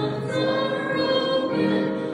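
A choir singing a hymn in slow, held chords that change every second or so.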